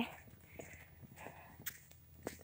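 Faint footsteps of a person walking along a road, with a sharp click near the end.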